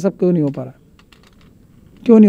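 A man's voice speaking briefly, then a pause with a few faint, quick clicks.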